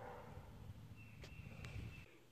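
Faint outdoor ambience: a low rumble of wind or handling noise. About halfway through comes a thin, steady high tone lasting under a second, with two light clicks in it.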